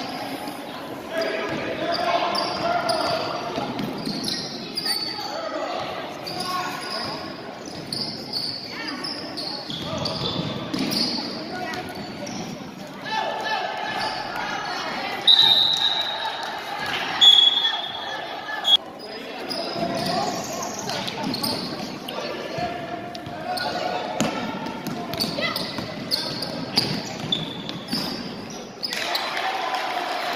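Basketball game in a gymnasium: a basketball bouncing on the court and indistinct voices of players and spectators, with two short, high referee's whistle blasts about halfway through.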